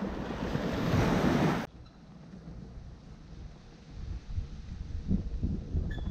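Small waves washing onto a sandy beach, mixed with wind on the microphone, swelling over the first second and a half and then cutting off abruptly. After that only a quieter low wind rumble remains.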